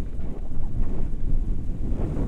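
Wind buffeting a camera microphone in paraglider flight: a steady low rumble with small gusts.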